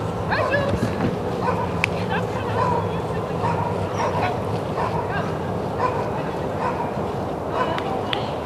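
Belgian Sheepdog barking repeatedly in short calls while running an agility course.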